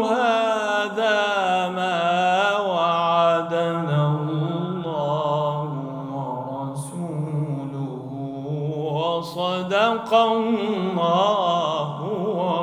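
A man reciting the Quran in the melodic tajweed style, drawing out long, ornamented vowels in one continuous phrase. His pitch drops about four seconds in and climbs again near the end.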